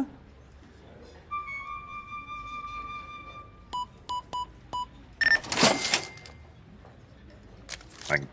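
Electronic touchscreen till: five quick short beeps as its keys are tapped, followed about a second later by a louder noisy burst from the register. Before the beeps, a single held flute-like music note.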